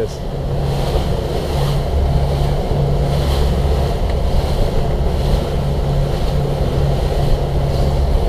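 Boat engine running steadily a little above idle, with wind blowing on the microphone.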